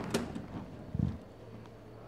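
Handling noise of a handheld phone camera: a sharp click just after the start, then a dull low thump about a second in, with faint rustling.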